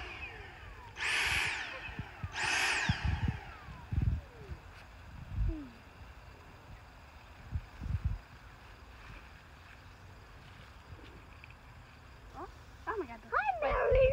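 Cordless Dyson handheld vacuum cleaner switched on in short bursts of about a second each, its motor whine rising quickly and then winding down in pitch after each burst, used to suck squash bugs off plants. A few low bumps from handling follow, and a voice comes in near the end.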